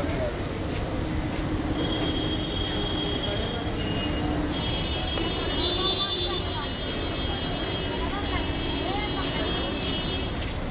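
Steady road traffic rumble with faint background voices talking, and a thin high-pitched whine that comes and goes.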